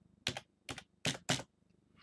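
Computer keyboard keystrokes: four quick, sharp clicks within about a second as a deposit amount is typed into a text box.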